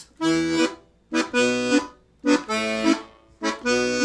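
Left-hand Stradella bass buttons of a 72-bass piano accordion playing four short, separate chords about a second apart: E minor, B minor, A major, B minor.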